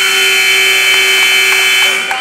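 Scoreboard buzzer marking the end of a wrestling period: one loud, steady blast of about two seconds that starts abruptly and cuts off near the end.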